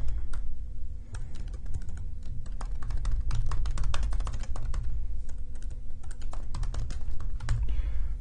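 Typing on a computer keyboard: quick, irregular key clicks over a steady low hum.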